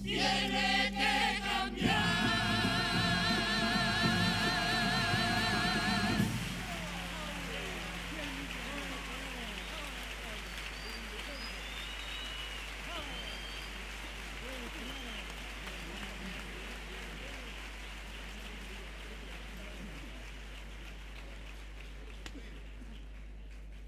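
Carnival coro (choir) holding a final chord with vibrato, which ends about six seconds in. A theatre audience then applauds and cheers in a steady patter that slowly dies down.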